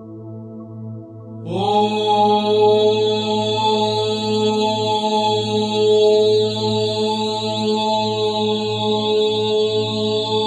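A steady low drone, then about a second and a half in a voice begins one long held chanted syllable, the root-chakra bija mantra "LAM". It glides up slightly at the start and then holds steady over the drone.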